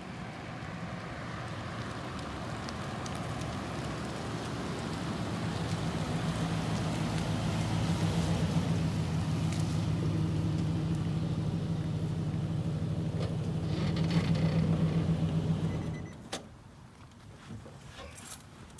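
Nissan Titan pickup's V8 engine drawing closer and louder as the truck pulls up, idling steadily, then switched off about sixteen seconds in. A few clicks follow near the end.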